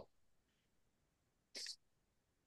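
Near silence, broken once by a short, faint breathy sound from a person, about a second and a half in.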